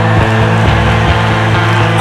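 Live metal band playing loudly: sustained distorted guitar chords and bass with drums, with a deep low hit about two-thirds of a second in and no vocals.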